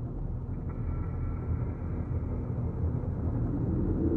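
A low, steady rumbling drone from the film's sound design, growing slightly louder. A faint thin high tone joins it about a second in.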